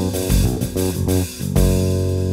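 Nylon-string classical guitar playing a quick jazz-fusion line over electric bass. A run of fast plucked notes gives way to a held chord about one and a half seconds in.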